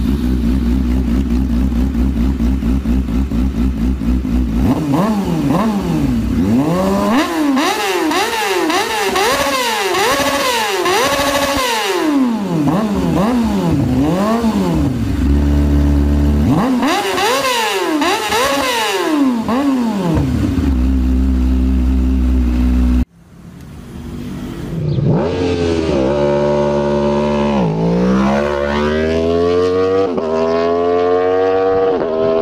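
Motorcycle engine idling, then revved over and over in quick blips, the pitch rising and falling with each, dropping back to idle between two runs of revs. Near the end it cuts off suddenly, and a different engine sound follows, its pitch climbing as it revs up.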